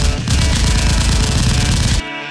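Rapid automatic gunfire sound effect, a fast, even stream of shots, over background music.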